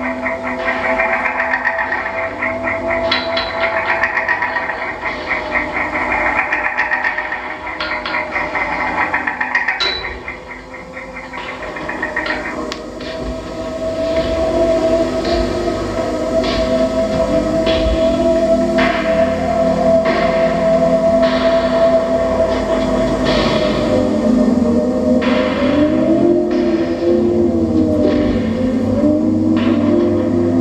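Live experimental electronic music played on table-top electronics and effects: a dense fluttering texture for about the first twelve seconds, then a held tone over repeated swooping pitch glides that rise and fall, with scattered clicks.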